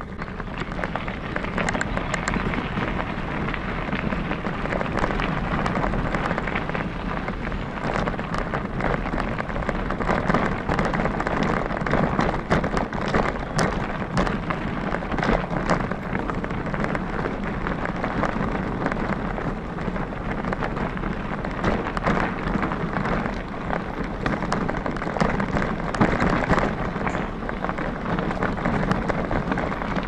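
Bicycle tyres rolling over a gravel and dirt trail: a steady crunching hiss dense with small clicks and rattles from the bike.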